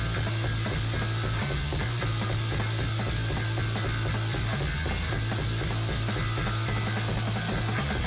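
Noise rock trio of distorted guitar, bass and drums playing a dense, rapid-fire passage over a held low bass note.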